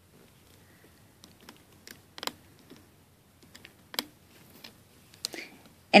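Scattered small clicks and taps of a metal-tipped loom hook and fingers on clear plastic loom pins as rubber bands are lifted up and over. There are a few sharp clicks, the strongest about two and four seconds in.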